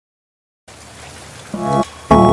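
Silence for about two-thirds of a second, then an old film-song recording starts with a steady surface hiss. A first pitched musical note comes in about a second and a half in.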